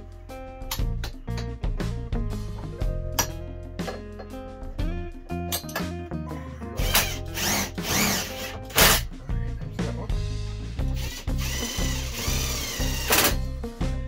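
Background acoustic guitar music, with a Bosch 12-volt cordless drill-driver whirring in two short spells in the second half, its motor pitch rising and falling with the trigger as it drives screws into the shower rod.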